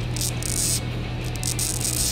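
Strokes of a small hand file on a plastic model part, cleaning up the sprue gates, in three short bursts over steady background music.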